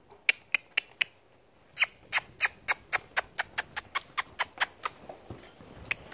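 A handler making sharp kissing clicks with the mouth, the usual cue for a horse or mule to move forward: four clicks in the first second, then a quicker, even run of about fourteen, about four a second, stopping near five seconds.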